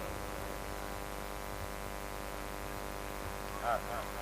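Steady electrical hum from a microphone and sound system, held at an even level, with a brief vocal sound near the end.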